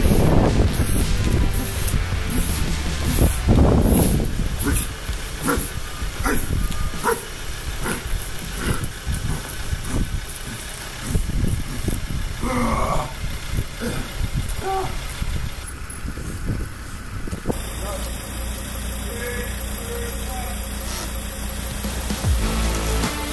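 Live sound of a pickup-truck pull: shouted encouragement in bursts, near the start, about four seconds in and again about thirteen seconds in. They sit over a steady low rumble and scattered knocks. The background changes abruptly about three-quarters of the way through.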